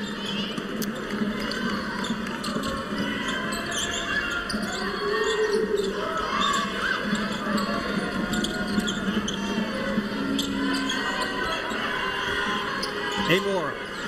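A basketball dribbling on a hardwood court amid the steady chatter of an arena crowd, with arena music playing underneath.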